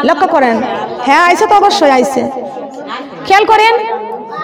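A woman preaching a Bengali Islamic sermon in a drawn-out, melodic delivery, with long wavering held notes.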